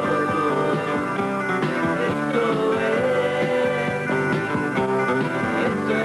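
Rock band playing an instrumental passage with electric guitar, bass and drums over a steady beat, under a lead line of long, bending notes.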